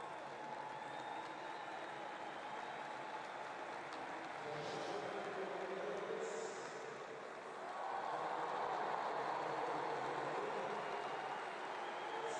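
Stadium crowd noise, swelling into louder cheering about eight seconds in as the shot is thrown.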